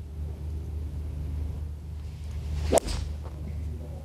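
A golf iron striking the ball off the tee: one sharp crack about three quarters of the way in, over a steady low background hum.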